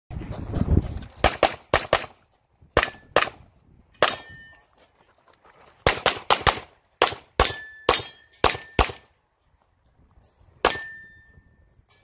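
Glock 34 Gen5 9mm pistol fired in quick strings: about seventeen shots, in pairs and short runs with pauses between, the last about a second before the end. Several shots are followed by a brief ringing tone.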